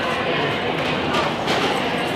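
Steady indoor hubbub of indistinct voices and bustle, with a couple of short knocks about a second and a half in.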